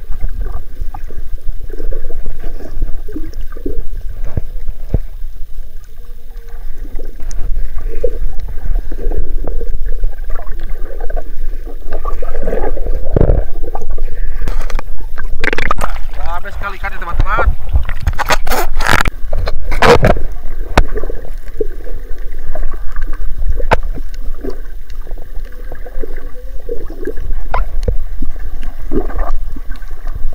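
Muffled underwater water noise and low rumble picked up by a camera held underwater, with muffled voices coming through. Midway there is a short run of louder splashing as the camera comes up at the surface.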